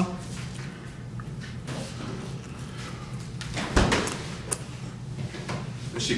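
Quiet handling noises as a rotisserie chicken is pulled apart by hand, with a dull thump a little before four seconds in.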